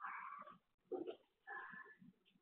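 Domestic cat vocalizing during play: three short calls of about half a second each, the loudest at the start, heard through a home security camera's microphone.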